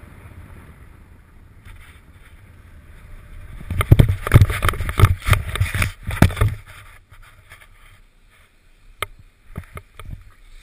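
Air rushing over a body-worn action camera's microphone during a rope-jump fall and swing: a steady hiss, then about three seconds of loud, irregular buffeting about four seconds in, easing off into a few sharp clicks near the end.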